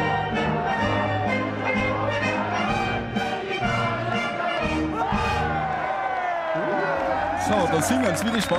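A national anthem played by an orchestra with brass, with a crowd of fans singing along. Near the end the crowd breaks into shouting and cheering.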